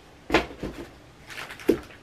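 Handling noise from items being moved on a desk: a sharp knock, a lighter one just after, some rustling, then another knock near the end.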